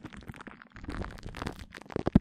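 Glue stick worked directly on a microphone: a dense run of sticky, tacky crackles and small pops, with a sharper pop near the end.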